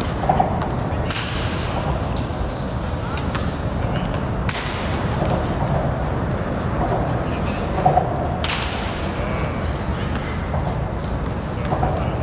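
Aluminum-or-wood contact is not shown, so: baseball bat hitting pitched balls, three sharp cracks several seconds apart, over a steady low rumble.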